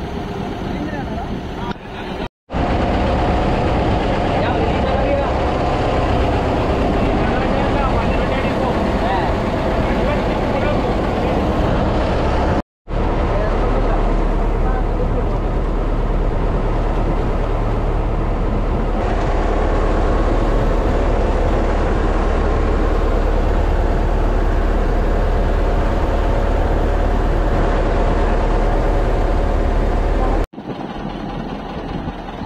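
A small boat's engine running steadily under way, with a low hum, water rushing past the hull and wind on the microphone. The sound drops out sharply for a moment twice, about two seconds in and near the middle.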